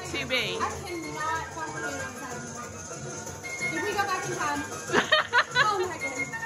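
Indistinct voices, high-pitched near the start and again about five seconds in, over music playing in the background.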